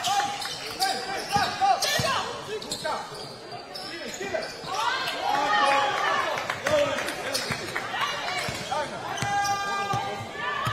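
Basketball bouncing on a hardwood court, with repeated short sneaker squeaks and players calling out.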